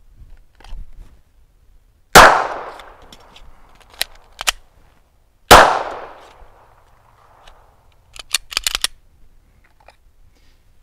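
Two 9mm pistol shots from a Glock 19X, about three seconds apart, each followed by an echo that trails off over about a second. Between the shots come two sharp clicks of the magazine reload. A quick run of clicks follows near the end.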